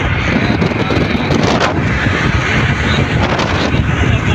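Steady road and wind noise of a car driving at motorway speed, heard from inside the car, with wind buffeting the microphone.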